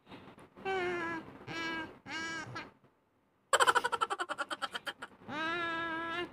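A woman playing a tune through her nose while pressing one nostril with a finger: three short nasal notes, then a rapid buzzing flutter for about a second and a half, then a longer held note near the end.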